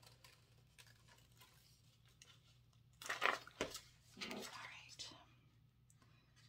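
Faint snips of scissors cutting a paper template, then louder rustling of the paper about three seconds in, with a sharp tap within it. A second stretch of rustling follows about a second later.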